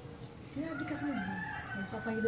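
A rooster crowing in the background: one drawn-out crow starting about half a second in.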